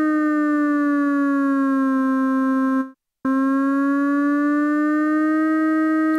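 Modal Argon 8M wavetable synthesizer playing two separate held notes, each sliding in pitch: the first glides down over about two seconds, and after a short gap the second glides back up. This is glide (portamento) set to a positive value, which applies even when the notes are played detached.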